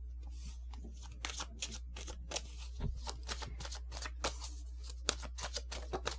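A tarot deck being shuffled and handled: a long, irregular run of short card flicks and clicks over a steady low hum.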